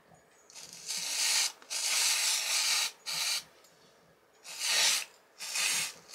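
Aerosol can of black hair root concealer spray hissing in about five short bursts, the longest about a second, as temporary colour is sprayed onto a lock of hair.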